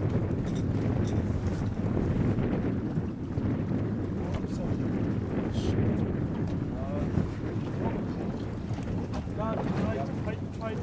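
Wind buffeting the microphone on a boat at sea, a steady low rumble, with faint voices near the end.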